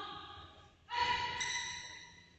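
A high-pitched voice calling out twice, a short call and then a longer, louder one held for about a second.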